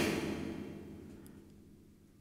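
Bare, sanded steel plate of a DIY plate reverb, hung on springs, ringing out after a tap with a thin metal rod, dying away over about a second and a half. The bright high frequencies ring freely now that the thick powder-coat paint that damped them has been sanded off.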